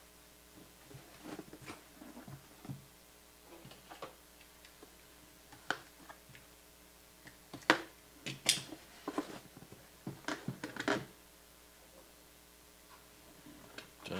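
Fingers picking and scraping at the edge of a cardboard box lid, making scattered small clicks and scratches, busiest about halfway through, over a faint steady hum.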